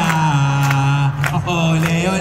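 A chant sung on long, steady notes that step to a new pitch about once a second, with a few sharp hits between the notes.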